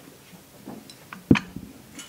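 Quiet room tone broken by a few light clicks and then one sharp knock a little past the middle.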